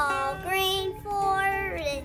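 A young boy singing, two phrases of held notes, each ending in a slide down in pitch.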